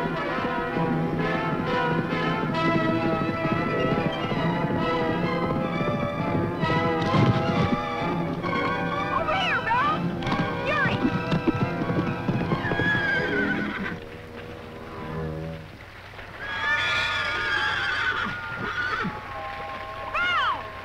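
Dramatic orchestral music over a galloping horse's hoofbeats, with the horse whinnying several times about halfway through as it rears. The music drops away briefly, then a loud swell comes in again near the end.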